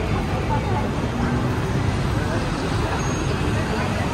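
Steady noise of city road traffic, with faint voices in it.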